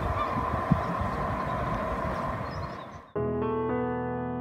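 Outdoor harbourside ambience with a steady hum and faint high calls, cut off suddenly about three seconds in by background music of sustained piano and string chords.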